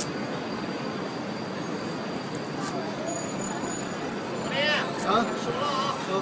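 Steady city street traffic noise with people's voices in the background, the voices briefly louder near the end.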